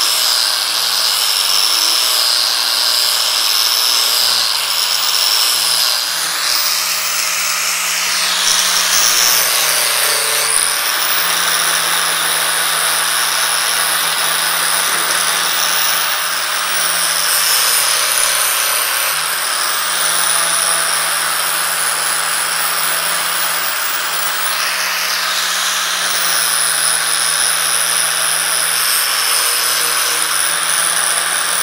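Handheld angle grinder running continuously with a high motor whine, its abrasive disc grinding steel tubing to strip powder coat and round off sharp edges. The whine sags and recovers as the disc is leaned into the metal, about a quarter of the way in and again near the end.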